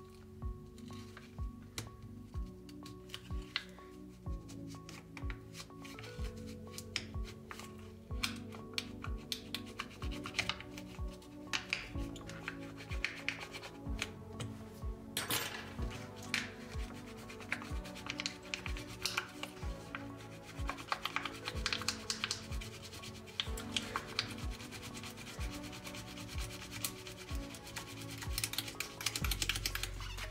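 Thin plastic film rubbing and scraping under a glued-in tablet battery as it cuts through the adhesive, with many short scratchy clicks. Quiet background music runs underneath.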